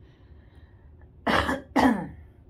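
A person coughing twice, loud and close to the microphone, the two coughs about half a second apart near the end.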